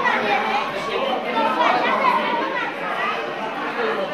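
Several people talking at once: indistinct overlapping chatter, with no music playing.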